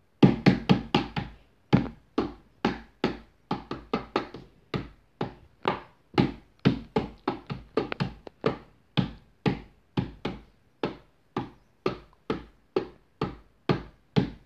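A long run of sharp knocks: a quick flurry of about five in the first second, then a steady beat of two to three knocks a second.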